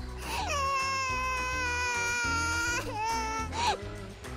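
A child's voice crying: one long held wail that drops in pitch as it starts, then a shorter, wavering cry near the end, over background music with a steady low beat.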